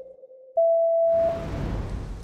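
Edited-in TV sound effects. A steady electronic tone gives way, about half a second in, to a louder, higher steady beep lasting under a second. It is followed by a low whooshing swell that fades away as the segment title appears.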